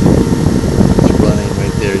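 Small 12-volt computer fan running close by with a steady hum over a rush of blown air, driving hot air out of a homemade solar air heater.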